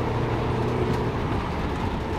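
Citroën C15 van's engine pulling in third gear at about 80 km/h, heard from inside the cabin as a steady drone over road noise.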